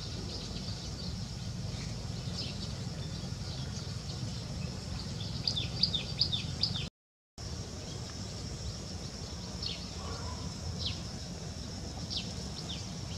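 Outdoor ambience of small birds chirping in short, falling notes, with a quick run of chirps a little past the middle and a few single chirps later, over a steady high hum and a low rumble. The sound cuts out completely for a moment just past the middle.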